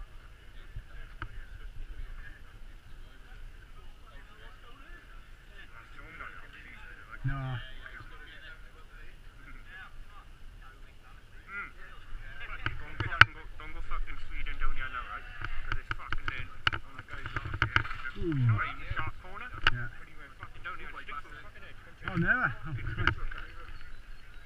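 Indistinct chatter of a group of mountain bikers talking among themselves, with a few louder calls. A sharp knock cuts through about halfway, with a softer one a few seconds later.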